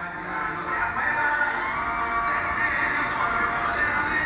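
Music playing, with sustained overlapping notes held steadily throughout.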